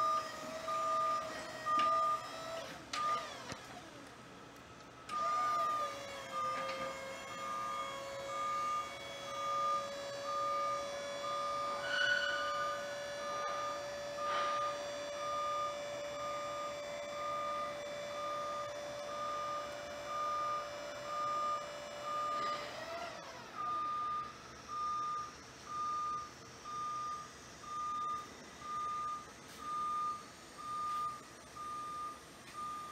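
Grove SM2632BE electric scissor lift: its motion alarm beeps steadily, a little over once a second, while the platform is raised. From about five seconds in to about 23 seconds the electric hydraulic pump motor whines steadily as it lifts the scissor stack, starting and stopping with a short slide in pitch. Only the beeping carries on after that.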